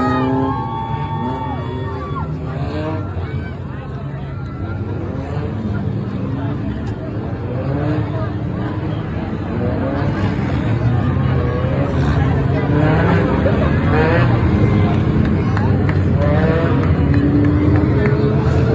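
Engines of a pack of four- and six-cylinder enduro race cars running together around the track, many overlapping notes rising as the cars accelerate and growing louder in the second half, with crowd chatter mixed in.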